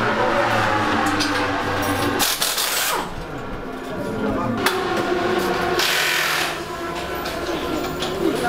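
Busy motorcycle race pit garage: background voices and the clatter of tools, with music underneath and a short burst of hissing noise about six seconds in.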